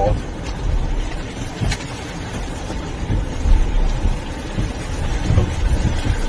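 Steady low rumble inside a car's cabin as it drives through deep floodwater, the engine and water against the body mixed together, with one brief click about two seconds in. The driver says the car is floating.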